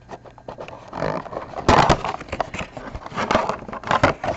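A cardboard figure box being opened by hand and its clear plastic insert slid out, making irregular scraping and rustling sounds with small clicks, loudest a little under two seconds in.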